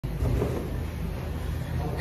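Steady low rumble and hum of background noise in a car service bay.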